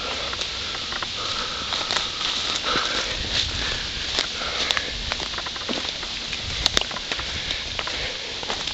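Footsteps through dry leaf litter on a forest floor: a steady rustle with scattered small snaps and clicks.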